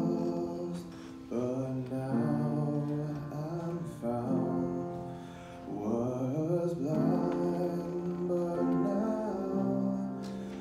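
A young man singing solo in slow phrases with long held notes, breaking briefly about a second in and again around five seconds in.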